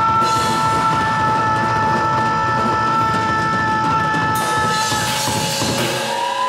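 Live rock band ending a song, with the singer holding one long, steady high note over the band's sustained chord for about five seconds. Cymbal crashes come in near the end as the note stops.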